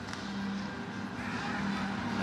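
Ambience inside an indoor football facility: a steady low hum under a faint murmur from the spectators, which grows a little about a second in as the play gets under way.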